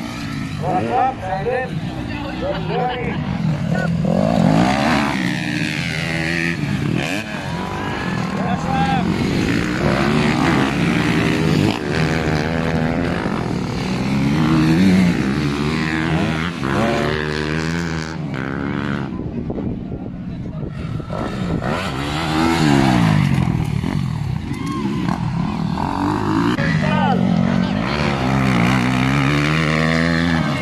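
Motocross dirt bike engines revving hard, their pitch rising and falling over and over as the bikes race the track and take the jumps, with several engines overlapping.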